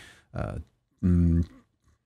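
A man's voice in a pause between phrases: a brief mouth or breath sound, then about a second in a held hesitation sound, "yyy".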